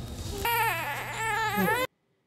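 A baby crying: a high, wavering wail of about a second and a half that cuts off suddenly, after a brief burst of noise at the start.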